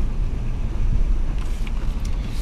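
A 2016 Honda Pilot AWD moving slowly over a dirt track: a steady low rumble of engine and tyres.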